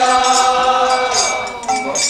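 Voices chanting a devotional Bengali bhajan in long held notes, one note gliding down about a second in, over metallic jingling percussion.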